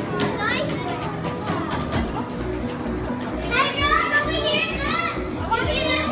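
Children's high-pitched voices calling out, mostly in the second half, over steady background music.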